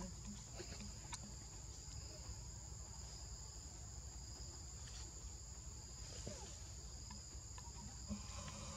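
Steady, high-pitched insect chorus: two unbroken shrill tones over a faint low rumble, with an occasional faint click.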